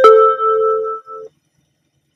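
Üstra tram's two-note announcement gong: the second, lower note is struck at the start and rings out, fading away by about a second and a quarter. It signals the next-stop announcement.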